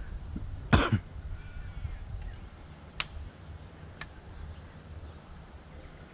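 A single short cough about a second in, over a steady low rumble of wind on the microphone, followed by two sharp clicks about a second apart and a few faint high bird chirps.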